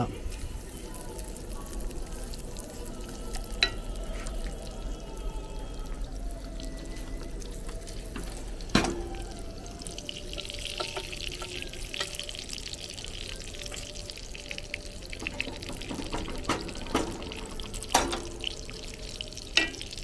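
Sliced sucuk frying in butter in a nonstick pan, a steady low sizzle that grows louder for a few seconds in the middle while a wooden spatula stirs the slices. A few sharp taps of the spatula against the pan.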